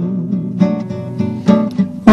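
Acoustic guitar strumming and picking chords in a Brazilian MPB song, during a short instrumental gap between sung lines.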